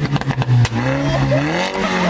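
Porsche 911 GT3 RS's naturally aspirated flat-six engine revving, its note rising and falling several times as it goes through the gears, with a few sharp cracks in the first second.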